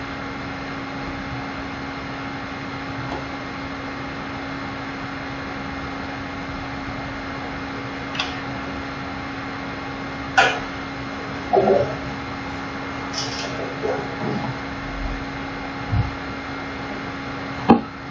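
Steady hum with one constant low tone. Over it, from about eight seconds in, come a few light, scattered clicks and taps: a plastic set square and pen being moved and set down on a drafting board.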